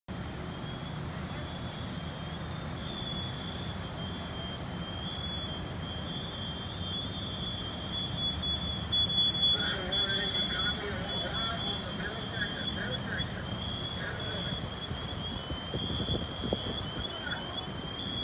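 Steady low rumble of fire engines running at a working fire, overlaid by a continuous high-pitched electronic tone that wavers slightly. Faint, indistinct voices come in about halfway through.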